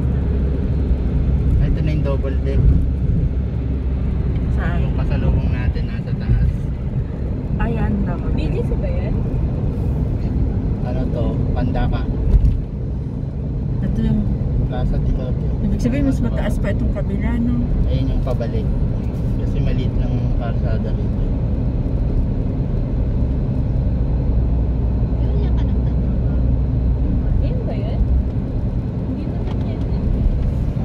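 Steady low road and engine rumble inside a moving car's cabin at expressway speed, with indistinct voices talking over it for much of the time. One brief louder knock about twelve seconds in.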